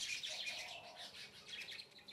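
Small birds chirping faintly, many quick chirps overlapping.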